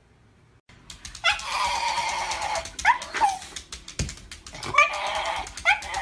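Shiba Inu whining and yowling, starting about a second in: drawn-out high-pitched cries broken by quick upward-swooping notes.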